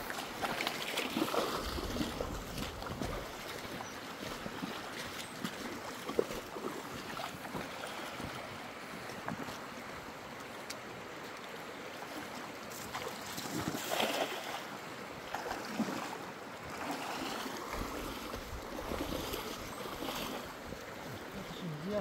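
Shallow stream running over rocks, with splashes from wading and from a cast net being thrown into the water and dragged back. Wind gusts hit the microphone now and then.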